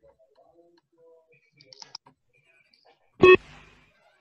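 A single short electronic beep from a shuttle-run (beep test) audio track, signalling the end of a shuttle, about three seconds in. Before it come only faint scattered clicks and knocks.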